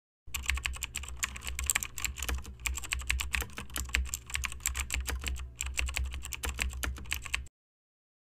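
Computer keyboard typing sound effect: a fast, continuous run of key clicks, with a brief pause about five seconds in, stopping abruptly near the end.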